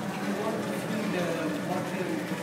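Indistinct background voices murmuring steadily, with no clear words.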